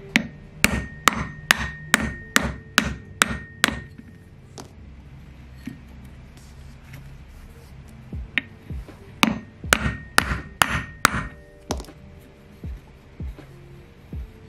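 Hammer blows on a wooden block driving a sealed ball bearing into its seat in an electric scooter hub motor's side cover, each blow with a short metallic ring from the cover. A run of about nine blows, about two a second, then after a pause another run of about seven.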